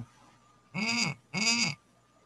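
Two short voice sounds about half a second apart, each rising then falling in pitch, with near silence around them.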